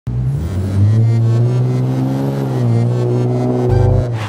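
Car engine and exhaust running with a deep steady note, the pitch drifting gently down and back up as the car drives off.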